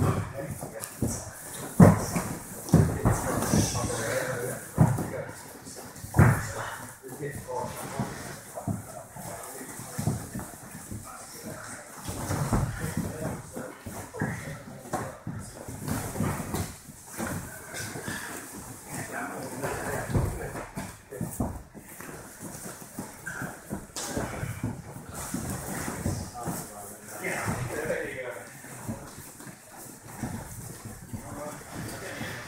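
Grappling practice: thumps of bodies against padded walls and mats, mixed with grunting, hard breathing and indistinct voices. The sharpest thumps come about two and six seconds in.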